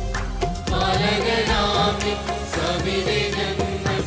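A mixed choir singing a devotional song with electronic keyboard and percussion accompaniment; the voices come in under a second in, over the instrumental backing.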